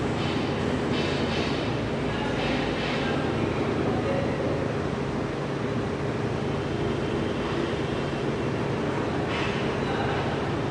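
A steady low hum and rumble of background noise, with a few short scratchy strokes of a felt marker writing on a whiteboard: several in the first three seconds and another near the end.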